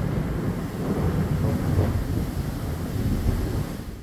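Strong gusting wind with heavy rain from a tropical storm, a dense low rumble rising and falling with the gusts. It fades out near the end.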